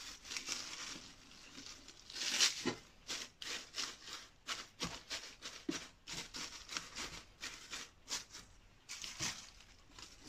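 Large dry leaves crinkling and rustling in irregular bursts as a hand presses and arranges them as leaf litter on terrarium soil, with the loudest crackles about two and a half seconds in and near the end.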